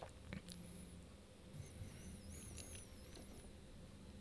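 Near silence: faint room tone with a steady low hum and a few soft clicks near the start. A faint, wavering high squeak runs through the middle.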